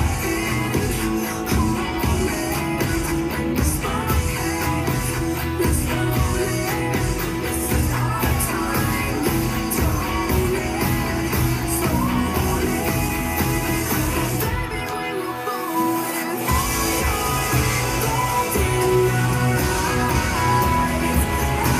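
Electric guitar strumming chords along with a recorded pop-worship song that has singing, bass and drums. The bass and drums drop away for a moment about three-quarters of the way through, then come back in.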